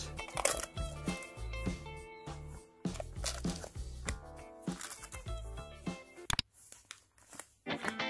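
Background music with a bass line and a beat, dropping away briefly near the end.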